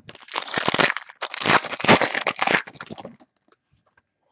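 A foil trading-card pack being torn open and crinkled in the hands: two spells of crackly tearing, each about a second long, dying away about three seconds in.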